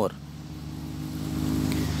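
A bus engine idling: a steady low hum that slowly grows louder.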